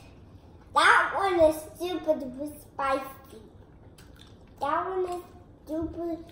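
Voices, mainly children's, in several short bursts of speech or vocalising with gaps between them.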